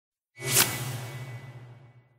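Whoosh sound effect for a logo reveal: it swells quickly to a peak about half a second in, then fades out over the next second and a half with a low rumble underneath.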